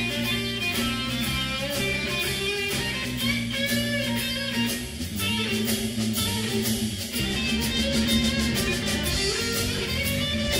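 Live band playing an instrumental passage: electric guitars over a drum kit keeping a steady beat.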